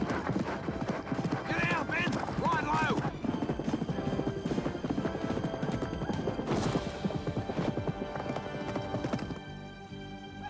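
Horses galloping hard: a fast, dense run of hoofbeats on dirt, with a horse whinnying about two seconds in. Background music plays under it throughout.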